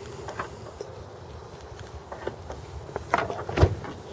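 Dodge Dart trunk being opened: a few light clicks, then a cluster of knocks ending in a dull thump about three and a half seconds in as the latch releases, over a low outdoor background.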